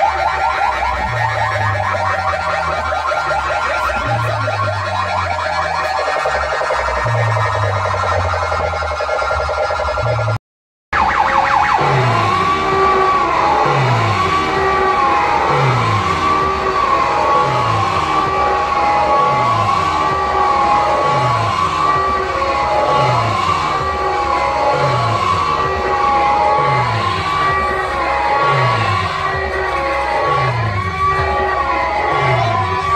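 Very loud dance music from a DJ's horn-loudspeaker sound system, with a heavy bass pattern. About ten seconds in the sound cuts out for an instant. It comes back as a siren-like wail that rises and falls over and over, about once a second, over repeated falling bass sweeps.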